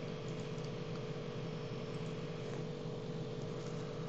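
Steady background hum and hiss, with no distinct events: the room tone picked up by the narrator's microphone.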